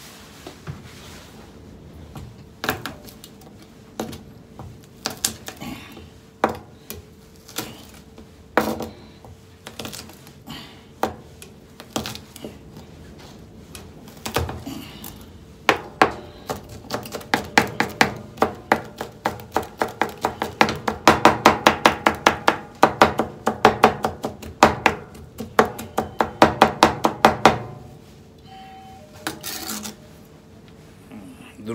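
A kitchen knife chopping garlic on a plastic cutting board. Single knocks come scattered at first, then about halfway through a fast, even run of chops, roughly five a second, which stops shortly before the end.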